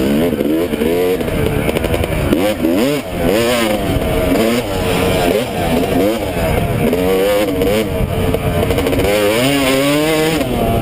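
Yamaha YZ250 two-stroke dirt bike engine, heard close up from the rider's helmet, revving up and falling back again and again as the throttle is worked along a woods trail.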